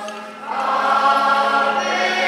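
A congregation singing a hymn together in long held notes, with a short break between phrases about half a second in.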